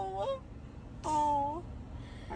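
A young girl crying: a held wailing note tails off with a bend in pitch just after the start, and a second, shorter wail of about half a second comes about a second in. She is crying happy tears.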